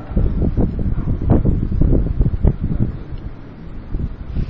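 Loud, irregular low rumbling and buffeting on the microphone, like wind or handling noise, with no speech; it eases somewhat near the end.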